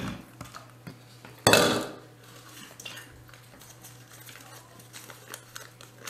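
A small glass bowl set down on a table with one sharp clink about a second and a half in, followed by faint, scattered small clicks.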